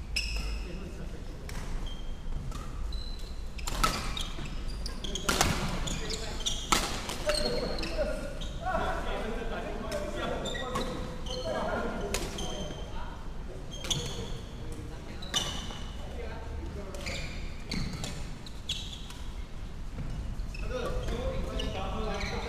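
Badminton play echoing in a large sports hall: sharp cracks of rackets hitting the shuttlecock, footfalls, and short high squeaks of court shoes on the wooden floor, with voices of players in the background.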